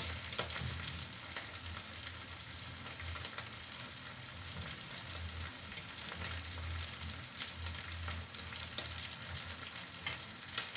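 Minced meat sizzling in a frying pan on a gas stove: a steady frying hiss dotted with small crackles.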